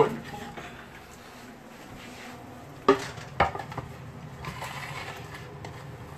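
Two sharp knocks about half a second apart, a few seconds in, then a few fainter clicks: kitchen clatter as a phone camera is handled and set down on a counter among bottles and jars.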